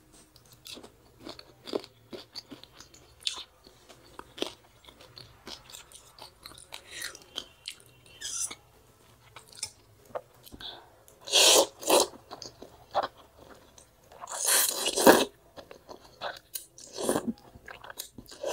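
Close-up chewing and wet mouth clicks of someone eating pork thukpa noodle soup. Loud slurps of noodles come twice just past the middle and again, longer, a few seconds later.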